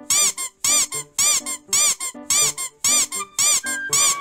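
Rhythmic squeaking, about two short squeaks a second, each rising and falling in pitch, starting at the beginning and keeping up a steady beat. A soft melody of low notes plays between the squeaks.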